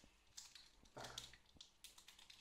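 Faint, scattered crinkles and ticks of a chocolate bar's wrapper being handled and pulled open.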